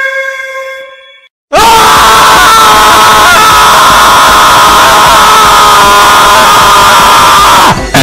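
A short held tone fades out, and after a brief silence several voices scream together, very loud and distorted, for about six seconds before cutting off just before the end.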